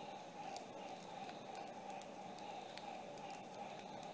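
Low steady room hiss with a few faint, light clicks from a small plastic action figure being handled; the sharpest click comes about half a second in.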